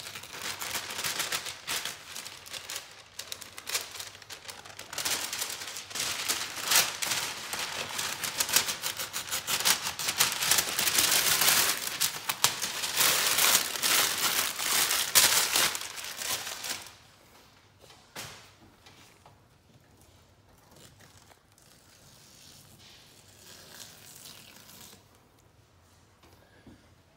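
Brown paper strip being pulled away from the wall at a double-cut wallpaper seam and crumpled by hand into a ball: a long stretch of crinkling and crackling paper that stops about seventeen seconds in.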